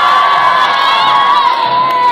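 Audience cheering and screaming as a vote by noise for a contestant, with one high voice held above the crowd that slides down and breaks off at the end.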